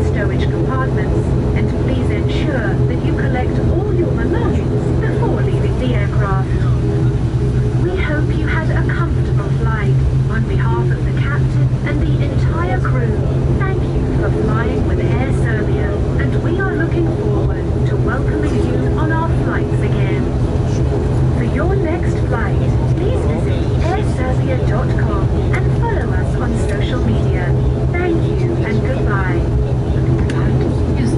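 ATR 72-600 turboprop engines (Pratt & Whitney PW127M) running with their propellers turning, heard inside the cabin as a steady, even drone with a deep hum and several higher steady tones. Voices talk over it throughout.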